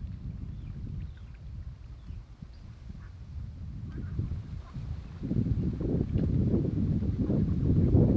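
Wind buffeting the microphone as a low rumble, jumping much louder about five seconds in, with a few faint high chirps above it.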